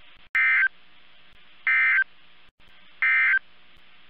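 Three short bursts of NOAA Weather Radio SAME digital code, each about a third of a second and about 1.4 s apart, over a faint steady radio hiss. Bursts this short are the end-of-message code that closes a weather radio broadcast.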